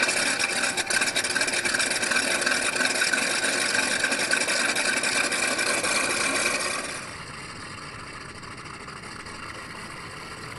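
A model plane's onboard scale sound system playing a simulated radial engine start-up and idle through its speaker, a loud, raspy, rough-running sound. About 7 seconds in it drops suddenly to a quieter, steadier engine sound.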